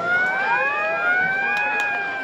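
Police siren sound effect wailing, several overlapping siren tones rising slowly together and starting to fall near the end.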